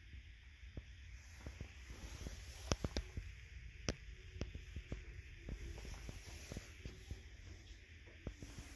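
Faint handling noise with scattered small clicks and taps, three sharper ones about three to four seconds in, as a phone is moved around among glass pieces in a display cabinet.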